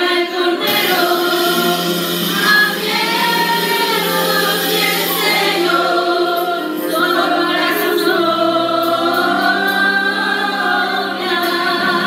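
A small group of women singing together into handheld microphones, their voices amplified, in one continuous sung passage.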